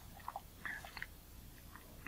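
Faint small clicks and light scrapes as metal tweezers work the oily parts of a Micro-Nikkor lens diaphragm apart. A handful of soft ticks come in the first second, with one more near the end.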